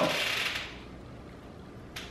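A bite into a bacon breakfast soft taco and quiet chewing, with a soft hiss at the start and a single small click near the end.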